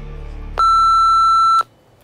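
A single electronic beep, one steady tone held for about a second, marking the end of a 30-second countdown timer.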